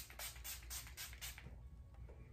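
Rapid spritzes of an L.A. Colors matte setting spray pump bottle misting the face, about five quick hissy sprays a second, stopping about one and a half seconds in.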